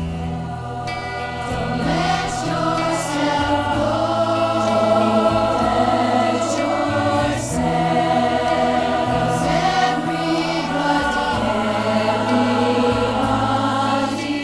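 A choir singing a slow song in harmony over instrumental backing, swelling in loudness over the first couple of seconds and then holding full.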